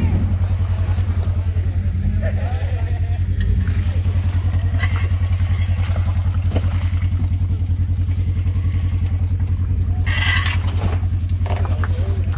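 Jeep Cherokee's engine running steadily close by as the Jeep is pulled over rocks on a kinetic recovery rope: a low drone with a fast, even pulse. A brief shout comes near the end.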